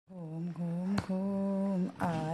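A woman humming a slow tune in three long held notes with short breaks between them, with a sharp click about a second in.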